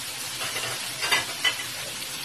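Shrimp sizzling in butter and garlic in a frying pan, a steady hiss, with two short clicks a little after a second in.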